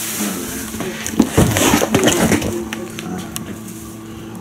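Groceries being handled in a small room: a cardboard box and bags of food are moved and set down, with a series of short knocks and rustles that are busiest in the middle.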